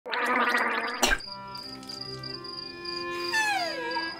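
Cartoon bubbling gargle for about a second, cut off by a sharp click. Then held musical notes with a steady high tone over them, and a falling glide near the end.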